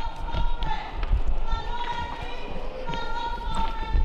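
A woman shouting loudly, in long held phrases that ring in a large hall, over repeated low thuds of a handheld camera being jostled and moved.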